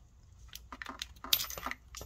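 Pliers clicking and clinking against a small metal part of a BorgWarner KP35 turbocharger as it is worked off: a quick scatter of light metallic ticks, sharpest about one and a half seconds in.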